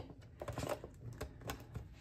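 Faint scattered clicks and light taps as hands handle plastic: a card is filed into a clear acrylic box on a tabletop.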